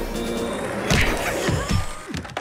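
Cartoon background music with a loud crash sound effect about a second in, followed by a few quick falling thuds as the tumble lands.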